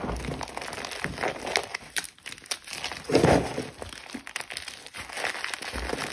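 Dried cornstarch crunching and crumbling as a hand squeezes it: a run of small crackles, with one louder squeezing crunch about three seconds in.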